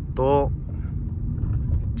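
Steady low engine and road rumble heard inside the cabin of a car moving at low speed.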